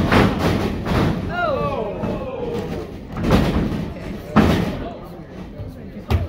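Wrestling ring canvas taking bodies: heavy thuds as the wrestlers hit the mat at the start, about three seconds in, and a sharper one about four and a half seconds in. Crowd voices run under it, with a falling shout between the first two impacts.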